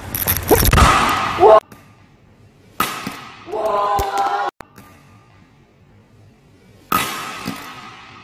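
Badminton smashes in a reverberant hall: two sharp racket cracks about four seconds apart, the first followed by short knocks and drawn-out voices. A loud burst of mixed voices and noise fills the first second and a half and cuts off abruptly.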